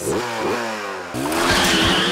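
Cartoon sound effect of an engine revving as something speeds away. It starts with sliding pitches, and about a second in turns into a steady, fast-pulsing motor buzz.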